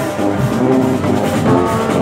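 Marching band playing a tune: a brass section of trombones, trumpets and baritone horns, with drums underneath. The notes change several times a second at a steady, loud level.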